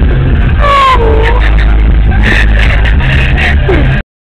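Car in motion heard from inside the cabin: a loud, steady low rumble, with short pitched voice-like or musical sounds over it, the clearest a falling pair of notes about half a second in.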